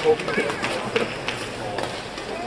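Voices in a badminton arena between rallies, with a sharp knock just after the start and a shorter tap about a second in.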